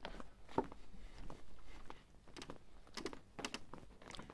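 Faint footsteps going down wooden boardwalk steps: a few soft, irregular knocks.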